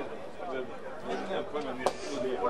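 Men's voices talking, with one sharp click near the end.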